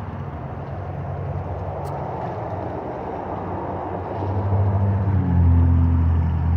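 Steady rushing of the koi pond's circulating water flow, with the air stones off. A low engine hum swells up over it from about four seconds in.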